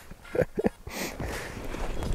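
A man scrambling up from kneeling on snow-covered ice while fighting a hooked fish: a few short bursts of laughter in the first second, then rustling and crunching of snow and winter clothing.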